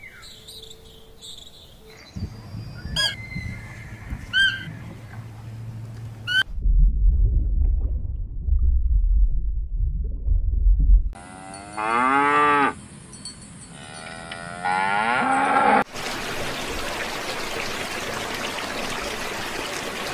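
A run of different animal sounds joined by hard cuts. It opens with a few short rising chirps and moves to a deep rumble, then two long, drawn-out calls that rise and fall in pitch. It ends in a steady rushing noise.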